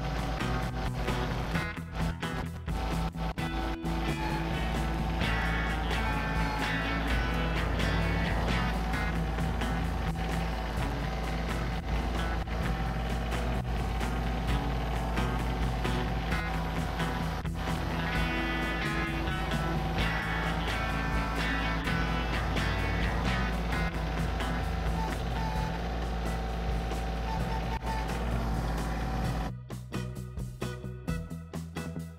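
Kioti CK2610 compact tractor's three-cylinder diesel engine running steadily under load as it drags a box blade through soil, with background music over it. The engine sound stops abruptly near the end, leaving the music.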